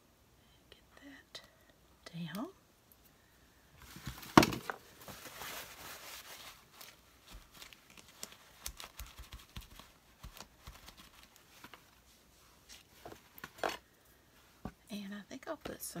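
Crinkling and rustling of paper handled at a craft table, one loud burst about four seconds in with a sharp crackle at its start, then scattered small clicks and taps. A few murmured words come in briefly near the start and again at the very end.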